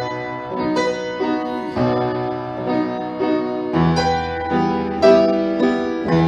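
Solo piano playing a slow passage of struck chords over sustained bass notes, growing louder near the end.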